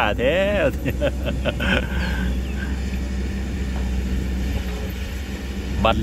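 Kobelco SK200 excavator's diesel engine running steadily, a low even hum, while the machine swings. Laughter sits over the first second or so.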